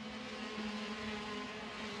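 A pack of KZ2 shifter karts' 125cc two-stroke engines running at high revs, heard together as one steady, even-pitched drone.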